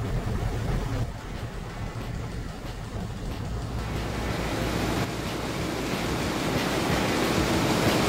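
Wind buffeting the microphone outdoors, a steady low rumbling noise that grows gradually louder, with music fading in near the end.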